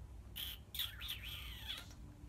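A run of high-pitched chirps and squeaks, some gliding down in pitch, over a faint low hum.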